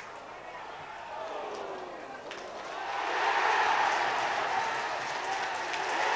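Football stadium crowd: a low murmur at first, then cheering swells up about three seconds in and stays loud as a goal is scored.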